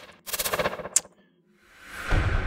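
Sound-effect library previews played one after another: two short bursts of rapid rattling pulses, a sharp click about a second in, then near the end a rising swell into a heavy cinematic slam impact that rings on.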